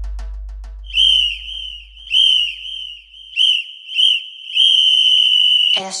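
Breakdown in an electronic dhol tasha remix: the drumming stops and a deep bass boom fades away over about three seconds. Over it a shrill whistle sounds in several short blasts, then one long blast that cuts off near the end.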